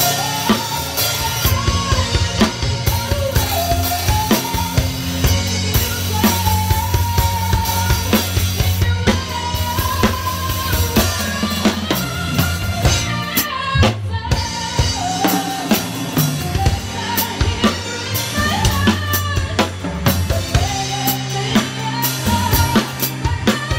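Drum kit played continuously with kick drum, snare with rimshots, and Sabian cymbals, in dense rhythmic strokes. Other music plays along, with a steady bass line and a wavering melody line above it.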